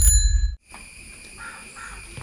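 A bell-like ding ringing out at the end of a loud intro sting, cut off about half a second in. Then quiet outdoor ambience with a steady high hum and two short chirps near the end.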